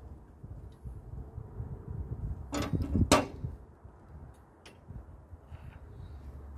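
Hand-tool work on a forklift engine's water pump: a low, uneven rustling rumble with two sharp metallic scraping clatters about two and a half to three seconds in, and a few light clicks.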